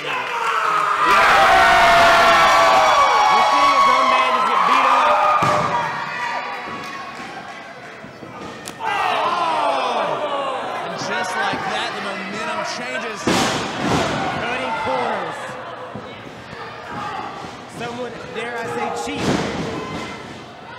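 Voices shouting and yelling over one another in a large hall at a wrestling match, loudest in the first few seconds. Three sharp impacts stand out: about five seconds in, about thirteen seconds in, and near the end, each a strike or a body hitting the wrestling ring.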